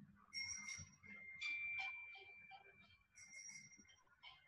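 Mobile phone ringtone playing a short melody, faint. The tune steps up in pitch partway through, breaks off briefly near the end and starts again.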